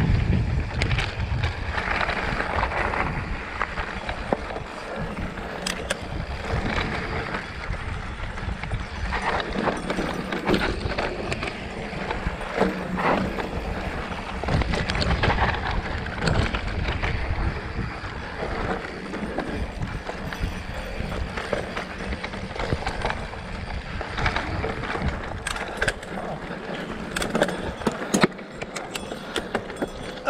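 Mountain bike ridden fast down a dirt trail: a steady rumble of tyres on dirt with frequent sharp clicks and knocks as the bike rattles over bumps, heard through a handlebar-mounted camera.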